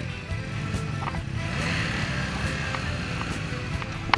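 Motorcycle engine running as the bike pulls along a dirt track, a steady low rumble, with a rise of hiss in the middle.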